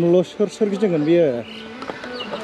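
A man's voice saying a short phrase, its pitch rising and falling, over about the first second and a half; quieter background after.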